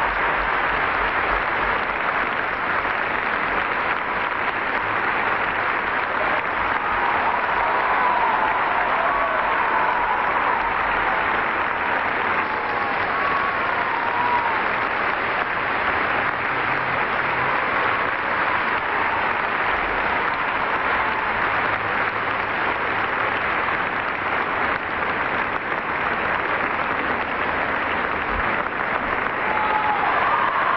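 An audience applauding steadily and at length, without a break.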